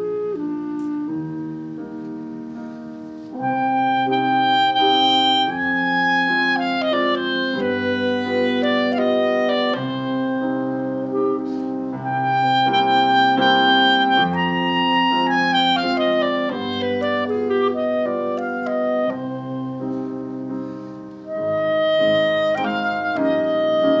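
Classical chamber music: clarinet and French horn play sustained, stepwise melodic lines over piano accompaniment. The music moves in phrases that swell louder about three seconds in, again near the middle, and again near the end.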